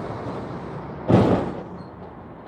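Traffic passing close by, a semi-truck with a flatbed trailer among it. About a second in comes a sudden loud thump, the loudest moment, fading within half a second.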